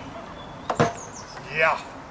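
A minigolf putter strikes the ball with a sharp knock, followed at once by a second knock. About a second later comes a brief shout.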